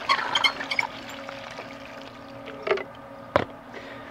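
Water from a garden hose overflowing a plastic watering can and splashing onto the mulch, then stopping, with a single sharp knock near the end over a low steady hum.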